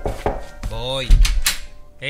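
A few sharp knocks on a door, a brief voice, then a heavy thud about a second in, as a door is opened.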